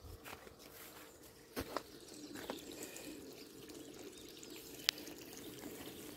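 Faint water sounds in an above-ground pool over a steady low hum, with a few soft knocks and one sharp click about five seconds in.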